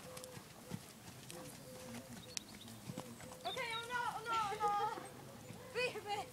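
Hoofbeats of a piebald pony cantering on arena sand, soft dull thuds. About halfway through a high voice calls out for a second or so, and again briefly near the end.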